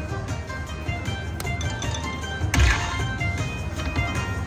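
Slot machine bonus-round music: a run of bright electronic chimes and melody notes, with a sudden louder swell about two and a half seconds in.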